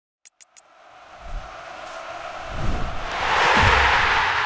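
Opening logo ident sound effect: three quick clicks, then a rush of noise that swells steadily with low booms and is loudest near the end.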